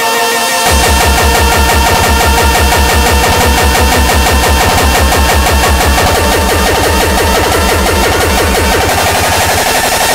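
Hardstyle electronic dance track: layered synths play throughout, and a fast, steady kick drum comes in under them about a second in. The bass drops out shortly before the end.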